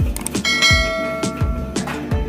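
A bell-chime notification sound effect rings about half a second in, preceded by a brief click, and fades over about a second. Background music with a steady beat plays under it.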